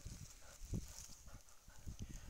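Faint, irregular soft thumps of footfalls on mossy grass as two dogs move close by.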